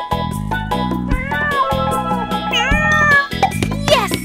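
Cat meowing twice, a long drawn-out meow about a second in and a shorter one that dips and rises near three seconds, the banana-cat meme's crying meow over bouncy background music with a steady beat.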